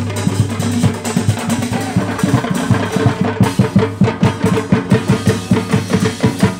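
A drum band playing a fast, steady beat on drum kits and hand-held drums.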